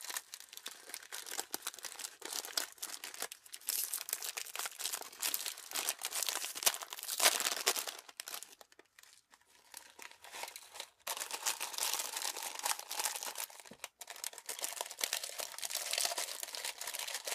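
Plastic seasoning sachet crinkling and tearing as hands work it open and squeeze it out, loudest just before the middle, with a quieter pause after it before the crinkling starts again.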